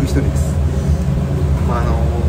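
Steady low drone of commercial kitchen equipment running, with a man's voice speaking briefly near the end.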